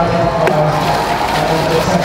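Background voices over a steady busy hubbub, with a single sharp knock about half a second in.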